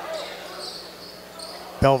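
Basketball being dribbled on a gym's hardwood court during live play, a commentator's voice starting near the end.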